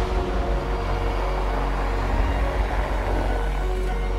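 Background music with a steady low bass, over which a car's tyre and engine noise swells as it drives past and eases off near the end.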